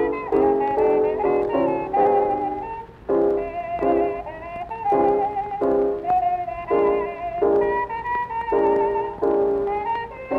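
Late-1920s jazz band recording playing an instrumental passage: the ensemble plays a riff of short, repeated chords, the upper notes with a wavering vibrato.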